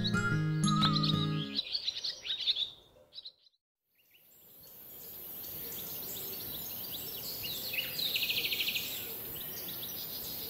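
Soundtrack music with bird chirps ends about a second and a half in, and the chirps fade out. After a brief silence, an outdoor ambience of birdsong and steady hiss fades in, with a fast trill about eight seconds in.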